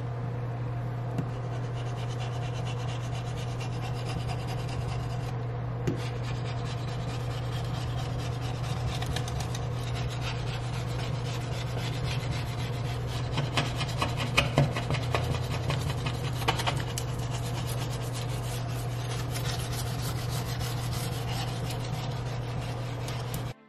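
Handheld blade scraper rasping across a glass-ceramic cooktop in repeated strokes, scraping off caked-on food. The strokes come thicker and louder in the middle of the stretch, over a steady low hum.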